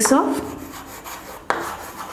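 Chalk writing on a chalkboard: scratchy rubbing strokes, with a sharp tap about one and a half seconds in.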